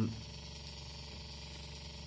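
A steady low hum with faint background hiss, with no distinct events, after the tail of a spoken "um" at the very start.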